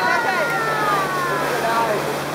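A person's voice shouting over a motorboat: one long call that falls in pitch and fades near the end. Under it the boat's engine hums steadily and the wake's water rushes.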